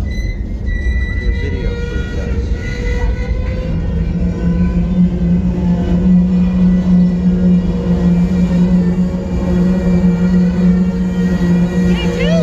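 Freight train of covered hopper cars rolling slowly past close by: a low rumble of wheels on rail with thin, high, steady squeals from the wheels. A strong steady low drone comes in about four seconds in.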